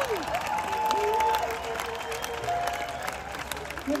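A concert crowd and performers applauding, many scattered claps, with a few held musical tones faintly underneath.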